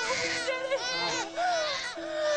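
Newborn baby crying in a run of short, wavering, high cries.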